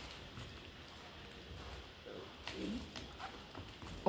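Faint handling of a small cardboard watch box and its packaging: a few light clicks and rustles over quiet room tone.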